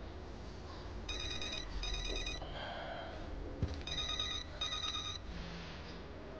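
Mobile phone ringing with an electronic double ring: two short rings, a pause, then two more short rings. There is a single soft knock between the two pairs.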